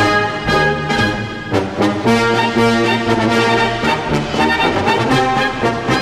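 Military brass band playing an instrumental army song, trombones and trumpets carrying the tune in sustained chords that change every second or so.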